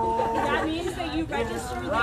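Several people talking over one another, with one voice holding a long drawn-out sound that ends about half a second in.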